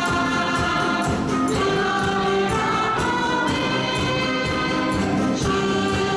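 A live choir singing a song with instrumental ensemble accompaniment over a steady beat.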